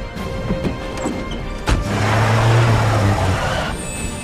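Film score music with a loud crash near the middle: a sharp impact, then about two seconds of heavy crashing noise with a deep rumble under it.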